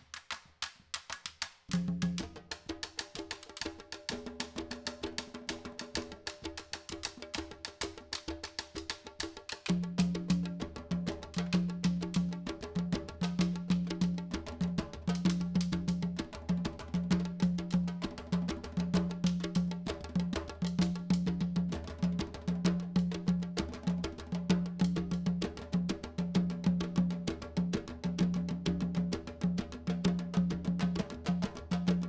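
Candombe drum ensemble of chico, repique and piano drums, played with hand and stick, in a steady interlocking groove. Sharp stick clicks open it, the drums come in about two seconds in, and the deep piano drum's low strokes join about ten seconds in, filling out the beat.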